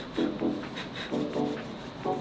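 Hands rubbing together to work in gymnastics chalk, a dry scuffing rub, with background music.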